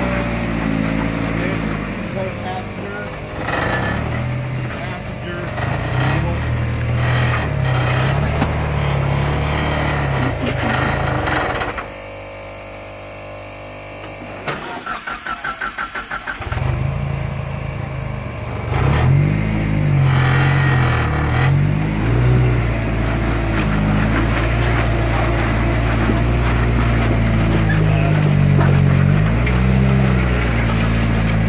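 Engine of a lifted Suzuki Samurai rock crawler labouring at low speed over boulders, the revs rising and falling in bursts. About twelve seconds in the engine stalls, and a couple of seconds later it is cranked on the starter in a quick run of pulses and catches again, carrying on with more bursts of revving.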